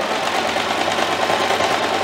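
Singer electric sewing machine running at a steady speed, stitching a seam through two layers of fabric.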